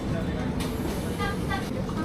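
Steady low rumbling background noise, with two brief faint voice sounds about a second and a half in.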